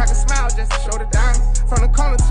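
Hip hop track with deep 808 bass notes that slide downward in pitch and fast hi-hats, with a vocal line over the beat.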